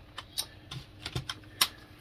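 Plastic CD jewel cases clicking and clacking as they are handled and picked up: a handful of separate sharp clicks, the loudest near the end.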